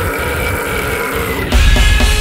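Grinding extreme-metal music. For about a second and a half the drums and bass drop back, leaving a ringing guitar chord under a low guttural, burp-like vocal. Then the full band comes back in with fast, even drumming.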